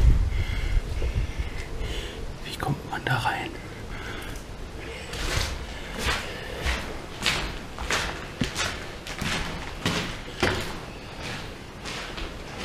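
Footsteps scuffing over a gritty floor at a slow walk, roughly one to two steps a second, with a few thumps near the start.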